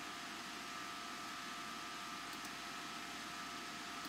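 Steady low hiss of room tone picked up by a computer microphone, with two faint steady whining tones.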